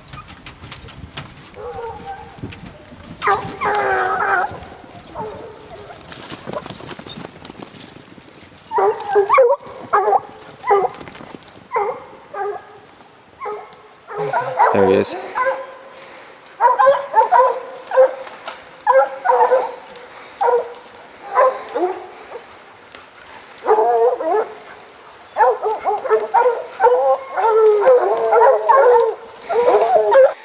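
Bear hounds baying on the chase of a black bear: repeated barks and bawls that start sparse and become an almost continuous chorus in the second half.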